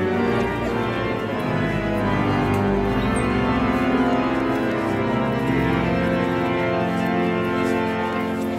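The grand pipe organ of Seville Cathedral playing sustained chords over deep bass notes, sounding through the vast stone nave.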